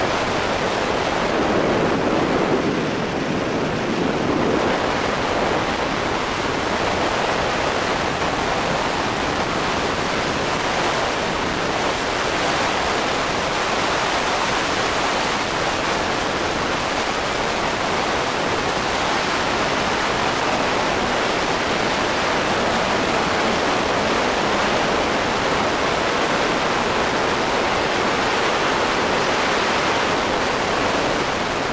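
Freefall wind rushing over the camera flyer's microphone: a loud, steady, even roar, a little deeper for the first few seconds after exit.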